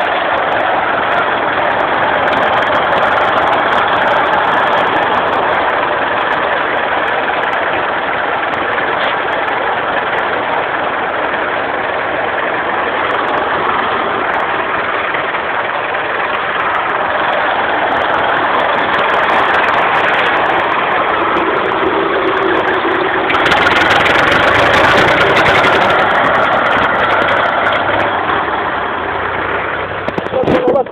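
IMT tractor diesel engine running steadily, growing louder for a few seconds about three-quarters of the way in.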